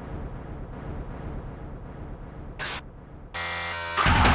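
Quiet break in an industrial electronic track: a low rumbling drone, a short burst of hiss near the end, then a harsh buzzing tone that leads straight back into the full music.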